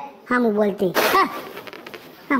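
A person's voice making short vocal sounds, with a sharp breathy burst about a second in.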